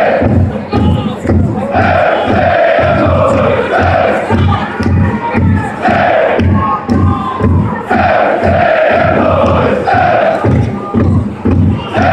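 Football supporters' block chanting in unison over a steady beat of about three strokes a second, the chant coming in repeated rising and falling phrases.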